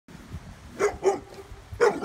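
A dog barking: two quick barks just under a second in, then another near the end.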